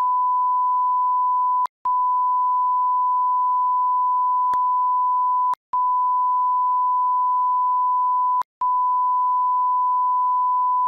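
A steady, pure, high censor bleep tone masking the audio of the argument, broken by three very short gaps about 2, 5.5 and 8.5 seconds in.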